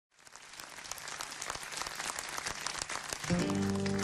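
Audience applause fading in and growing louder. A little over three seconds in, an acoustic guitar starts playing sustained, ringing notes over it.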